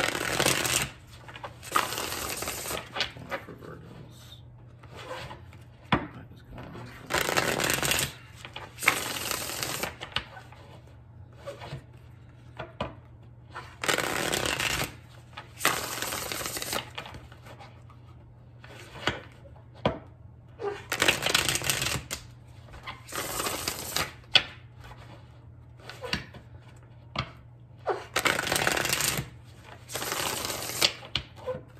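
A new Witch's Tarot deck being shuffled by hand: about a dozen short bursts of card shuffling, each around a second long, with pauses between them.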